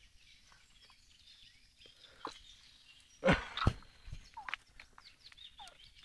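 Faint bird calls outdoors, broken by a short click about two seconds in and two loud, sharp knocks a little past three seconds.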